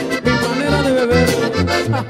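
Live sierreño band music with no singing: a button accordion plays the melody over tuba bass notes on the beat and strummed acoustic guitar.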